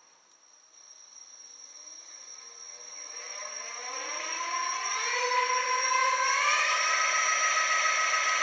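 Planetary-geared 36 V 500 W e-bike hub motor spinning up under throttle, running free in the stand: a whine of several tones that rises in pitch and grows louder for about five seconds, then holds steady. A thin, steady high tone sounds throughout.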